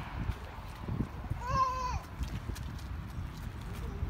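A toddler's single short call at a steady high pitch, about a second and a half in, over a low rumble.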